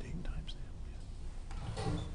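Faint, low murmured voices over a steady low room hum, with a short murmur near the end.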